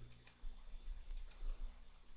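A few faint computer mouse clicks, scattered and light, over a low steady hum.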